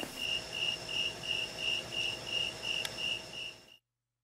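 Crickets chirping: a steady run of short, high, even chirps, about four a second, fading out just before the end.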